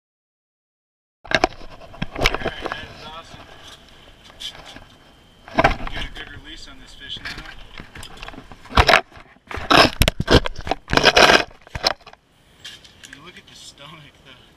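Silent for about the first second, then handling noise close to the microphone: rustling, scraping and knocking as the camera is moved, with several loud bursts in the second half.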